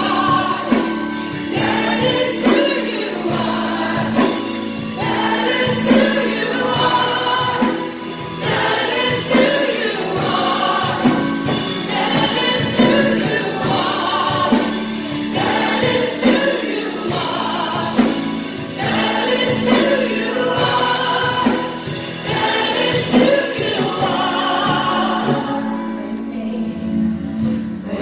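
Live contemporary worship music: singers on microphones, with acoustic guitar, leading a congregation singing together.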